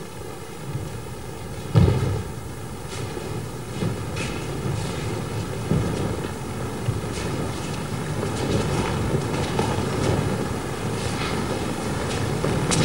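Thuds of bodies landing on a stage mat as aikido partners are thrown and take their falls: one heavy thud about two seconds in, then several softer thumps, over a steady rumbling noise.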